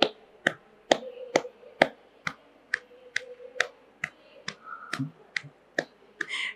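Steady hand-clapping keeping time to a devotional bhajan, about two sharp claps a second, in a pause between sung lines, over a faint held drone.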